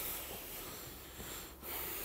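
Faint breathing against a low, steady microphone hiss, with a soft intake of breath shortly before speech resumes.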